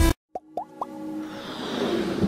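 Electronic intro music cuts off into a brief silence. Three quick rising bloop sound effects follow, then a swelling whoosh that builds back up.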